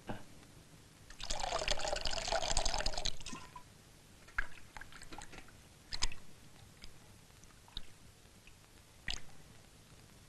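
Water poured from a kettle into a basin for about two seconds, then splashes and light knocks as a bowl is washed in the basin, a few seconds apart.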